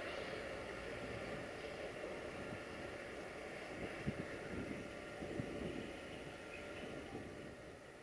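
Tank wagons of a freight train rolling away along the track: a faint, steady rumble that slowly fades, with a few light knocks near the middle.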